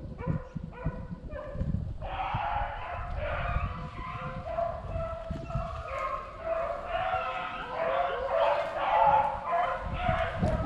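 A pack of beagles running a rabbit, baying in the brush. At first one dog gives short, repeated yelps. From about two seconds in, several dogs bay together, their voices overlapping without a break and growing louder near the end.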